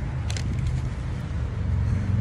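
A motor vehicle engine running with a steady low rumble that grows louder toward the end, with a brief soft hiss about a third of a second in.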